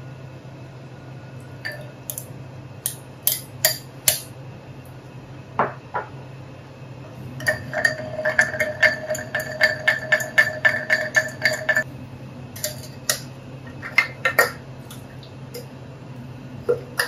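A long bar spoon stirring inside a ceramic pitcher, clinking against its wall about five times a second for some four seconds in the middle, with the pitcher ringing. A few separate clinks of ceramic cups and the pitcher being handled come before and after.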